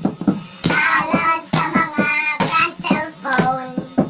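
A group of young voices chanting in a sing-song rhythm, with hand claps, in a small room.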